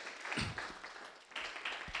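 Audience applauding, a dense patter of clapping that swells near the end, with two short low thumps.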